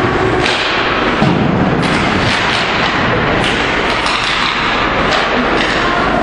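Steady noise of an indoor ice hockey game heard from the stands, with several short knocks and thumps scattered through it.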